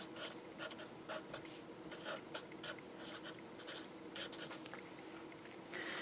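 Marker pen writing on paper: a series of short, faint scratchy strokes as a few words are written.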